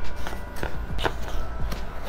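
Twine being pulled off a small cardboard box and the box being handled: a few separate light taps and scrapes, roughly half a second apart.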